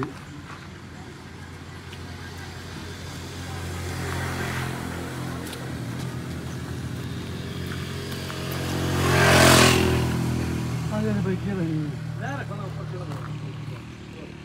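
Motor-rickshaw loader's small engine idling steadily. A vehicle passes close by about nine seconds in and is the loudest sound.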